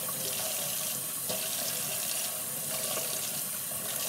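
Kitchen faucet running steadily into the sink while cupped hands scoop water and splash it onto a face.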